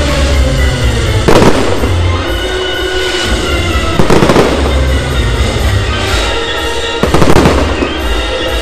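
Aerial fireworks bursting overhead: three loud bursts about three seconds apart, each trailing off into a brief crackle.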